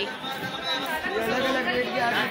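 People talking, several voices overlapping in chatter.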